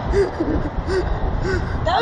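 A ride passenger's short breathy gasps, about five in quick succession, over steady wind rushing across the microphone of a camera mounted on a moving slingshot ride.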